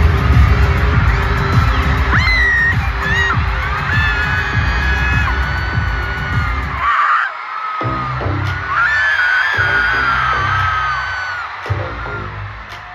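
Live K-pop arena concert through a phone microphone: loud music with heavy pounding bass, and fans screaming and cheering in high voices over it. The bass cuts out for about a second midway, then comes back in.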